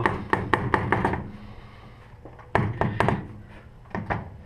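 Loose radiator fan shroud of a 1969 Chevy C10 knocking as it is shaken by hand: about half a dozen quick knocks in the first second, then another cluster of knocks about two and a half seconds in. The knocking comes from the shroud being poorly fastened at its lower mounts.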